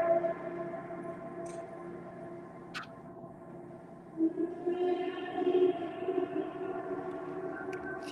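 Large hanging gong ringing with a sustained hum of layered overtones. It fades over the first few seconds, then swells again about four seconds in as it is played once more.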